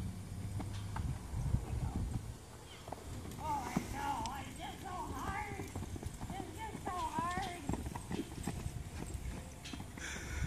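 Hoofbeats of a horse trotting on a lunge line in sand. Twice in the middle there is a wavering high-pitched call.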